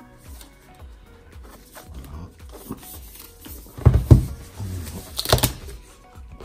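Cardboard product box being handled and unpacked, over quiet background music: two heavy thumps close together about four seconds in as the box is set on a wooden table, then a short paper rustle near the end as the box's paper sleeve is pulled open.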